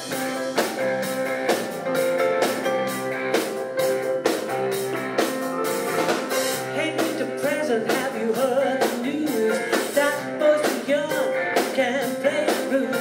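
Live blues-rock band playing, with electric guitars, bass and a drum kit keeping a steady beat. A woman's voice comes in singing about halfway through.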